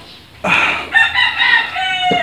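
A rooster crowing once: a single crow about two seconds long, starting about half a second in and dropping in pitch at the end.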